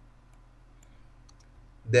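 A few faint, scattered clicks from a computer keyboard as text is deleted from a field, over a quiet room background.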